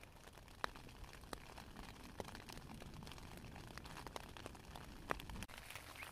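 Light rain pattering on a tent's fabric, heard from inside the tent: faint, irregular single taps of drops over a low hiss.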